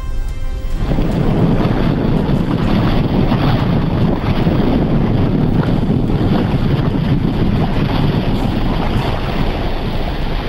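Water rushing over the overflow weir of a lake that is full and spilling, mixed with wind buffeting the microphone. It is a loud, steady rush that starts about a second in, as a voice cuts off.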